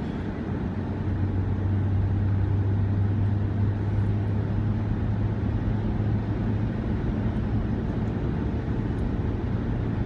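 Steady road and engine noise inside a car cruising at motorway speed, a low drone under an even rush of tyre and wind noise.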